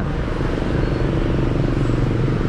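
A motor vehicle engine idling with a steady low rumble.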